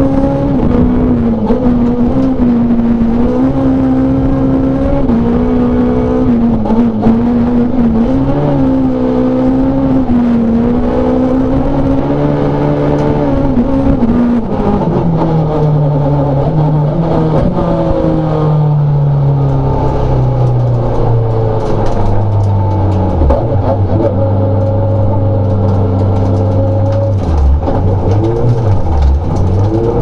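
Rallycross car's engine heard from inside the cabin, running at high revs with the pitch wavering up and down as the driver works the throttle. About halfway through the revs fall away as the car slows, and the engine settles into a low, steady note.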